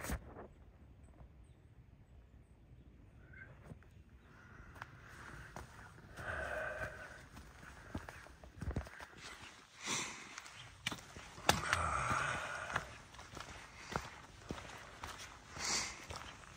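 Footsteps of a hiker walking on a dirt trail covered in fallen leaves, with irregular shuffling and crunching. The first few seconds are quiet, and the steps begin about five seconds in.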